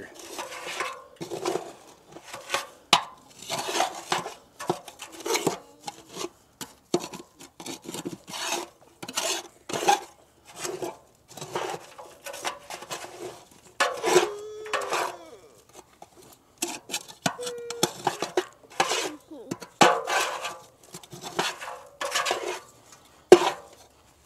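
Flat metal ash tool scraping and stirring wet ash mixed with clay oil-dry absorbent across the steel floor of a fire pit, in irregular short strokes with gritty scrapes and metal clinks.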